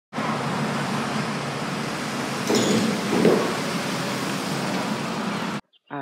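Steady road traffic noise, with a louder vehicle passing about halfway through. It cuts off suddenly near the end.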